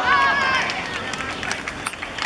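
A single high-pitched young voice shouting for about the first second, a cheer as a goal goes in, followed by scattered light knocks of players running on grass.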